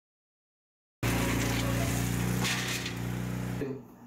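Wheel loader's diesel engine running steadily at a constant pitch. It starts abruptly about a second in and cuts off suddenly shortly before the end.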